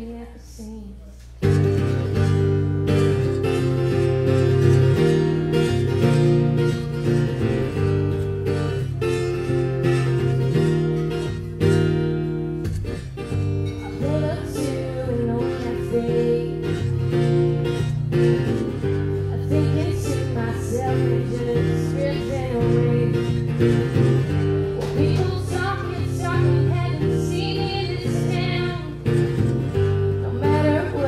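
Acoustic guitar strummed with a woman singing over it, a live solo singer-songwriter performance. The music is briefly quieter in the first second and a half, then goes on at full level.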